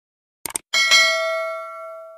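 Subscribe-button animation sound effect: a quick double mouse click about half a second in, then a bright bell ding that rings on, slowly fading.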